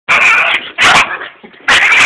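Small puppy barking at a vacuum cleaner: three short, high-pitched yaps in quick succession.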